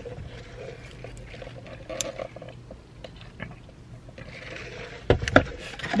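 Low steady hum inside a car cabin, with a faint click about two seconds in and a quick run of sharp knocks and clicks near the end as a takeout food container is handled.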